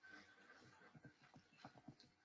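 Near silence, with a faint run of short, irregular clicks and taps, most of them in the second half.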